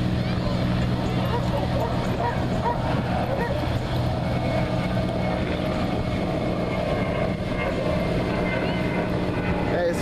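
Beach ambience: surf washing in, people talking, and dogs barking and yipping, over a steady low hum.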